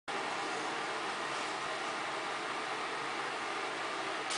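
Steady, even background hiss, like fan or air-conditioning noise, with no other sound over it.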